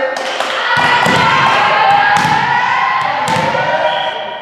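Several sharp thuds of a volleyball being bounced or struck, ringing in a large echoing sports hall, over girls' voices calling and shouting.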